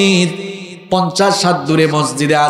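A man's voice delivering a sermon in a melodic, chanted style through microphones, holding long steady notes. The first note trails off with an echo, and the chanting starts again about a second in.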